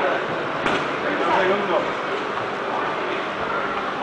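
Indistinct voices of onlookers over steady background noise in a boxing gym during a sparring round, with one sharp knock about half a second in.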